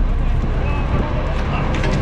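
Steady low rumble of a fishing boat's engine and wind, under indistinct voices, with a few faint knocks as a netted lingcod is hauled aboard.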